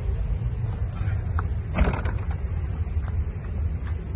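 A vehicle engine idling with a low, steady rumble, with one short clatter about two seconds in.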